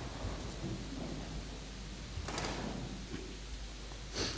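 Quiet church room noise with a low steady hum and a brief rustle a little over two seconds in.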